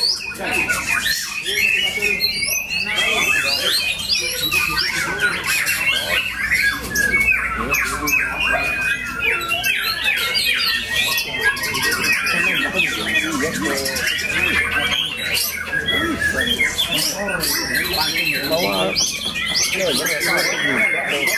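White-rumped shamas singing without a break: a loud, fast, varied stream of whistles, trills and chattering notes, several birds' songs overlapping.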